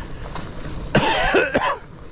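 A man coughing: a short run of two or three harsh coughs about a second in, over the low rolling noise of a mountain bike on a leaf-covered trail.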